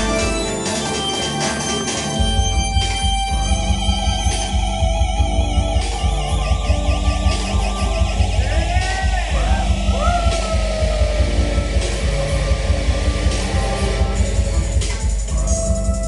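Juke/footwork electronic dance music played live: synthesizer keyboard lines over a fast, dense kick and bass pattern that drops in about two seconds in, with swooping pitch-bent synth notes near the middle.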